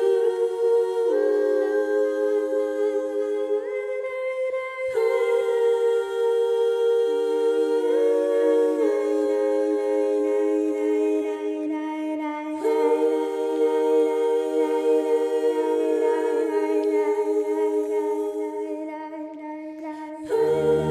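Music: layered voices humming slow, sustained chords, with no drums or bass. The notes glide from one chord to the next every few seconds, and it grows quieter near the end.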